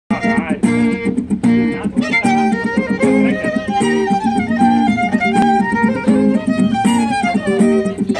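Violin playing a melody over acoustic guitar accompaniment, the two played live together as a duo without a break.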